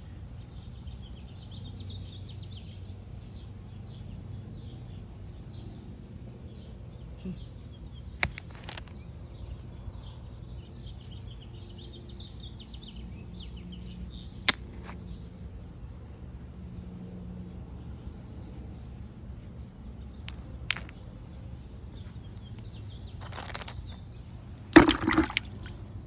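Rocks clicking against each other now and then as they are picked up and handled, then a short splash of water near the end as a rock is wetted. Faint bird chirping runs underneath.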